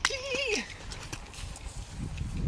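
A short, high-pitched, wavering vocal sound from a young person in the first half second, then faint scattered scuffs and clicks.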